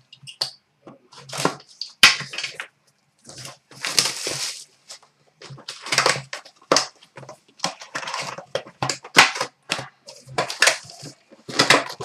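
A cardboard hobby box of trading-card packs being torn open, and the foil packs pulled out and set down on a glass counter. It comes as a run of short tearing, rustling and tapping sounds, with a sharp click about two seconds in.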